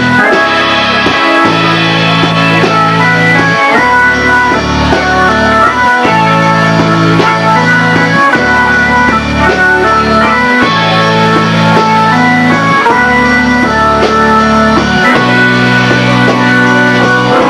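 Live band playing an instrumental passage with no singing: an organ-like keyboard carries the melody over a bass line that moves to a new note every couple of seconds.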